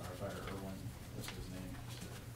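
Faint, muffled speech in short phrases, over a steady low hum.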